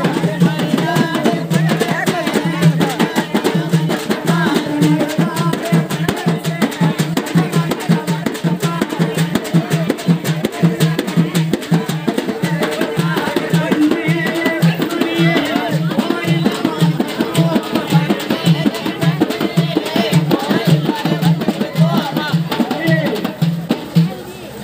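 Irular folk song: a man sings into a microphone over a group of hand drums beating a fast, steady rhythm.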